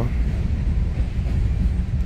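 Wind on the microphone: a steady, fairly loud low rumble that flutters unevenly, with no pitch to it.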